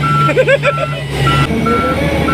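A heavy construction machine's reversing alarm beeping repeatedly, about two high beeps a second, over its engine running; the engine note steps up about one and a half seconds in. A short laugh comes near the start.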